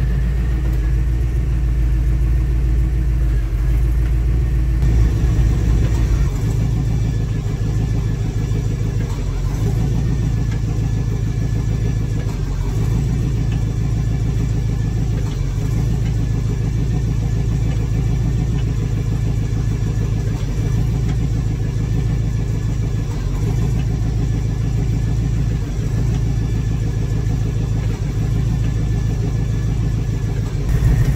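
Off-road buggy's engine idling steadily, running the hydraulic power-steering pump that drives the rear-steer rams while they are cycled. The sound changes character about five seconds in.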